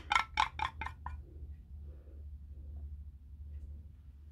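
A wooden craft stick scraping leftover paint out of a paint cup in quick strokes, about five a second, which stop about a second in. A faint low hum runs underneath.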